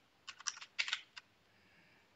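A quick run of about six computer keyboard keystrokes in the first second or so, the shortcut presses of copying and pasting a block of code.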